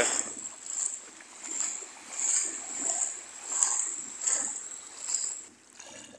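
Footsteps wading through shallow water, a splash with each stride, about one every 0.7 seconds.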